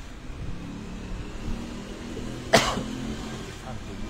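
Car engine running at low revs in the street, a steady low hum, with one brief sharp sound, the loudest thing, about two and a half seconds in.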